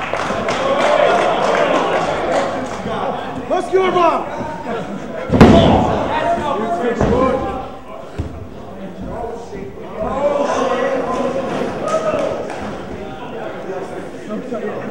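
Voices shouting in the crowd, with one loud impact about five seconds in: a body hitting the wrestling ring mat.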